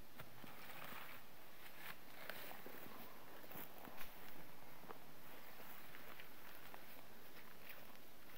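Wooden hay rake scraping and rustling through freshly cut grass, with footsteps on the mown meadow and many small scattered crackles. There is a brief louder thump about four seconds in.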